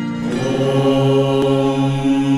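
Devotional Hindu chant music: a voice holds long, steady notes over instrumental accompaniment, opening a Sanskrit Ganesh mantra.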